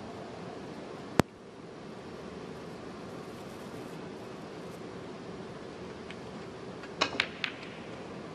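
Snooker shot: the cue tip strikes the cue ball and the cue ball cracks into the balls near the pack, a quick run of three sharp clicks near the end. Earlier, about a second in, a single sharp click of unclear source stands out loudest over the steady hush of the arena.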